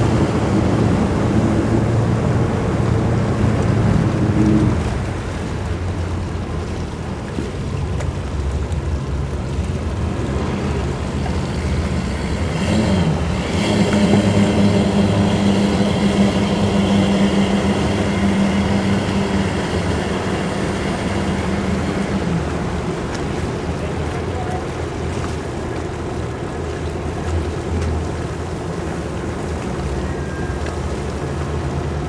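Bank of outboard motors on a fire-rescue boat running at low speed, a steady low drone that is louder for the first few seconds and then eases. From about 13 s a held higher engine note joins it for roughly ten seconds before falling away.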